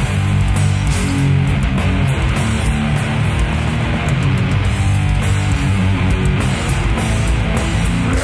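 Live death metal played by a full band: distorted electric guitar on a Fender Telecaster, bass and drums with cymbals, loud and steady.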